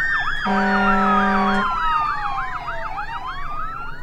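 Emergency vehicle siren: a fast yelp rising and falling three to four times a second over a slower wail that sweeps down and then back up. A steady horn blast starts about half a second in and lasts about a second.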